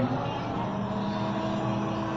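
Steady background din of a busy eatery with a low, even hum, and no distinct events.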